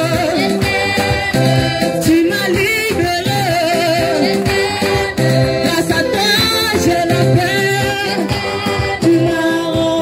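Church congregation singing a gospel worship song together, with a woman's voice leading through a microphone.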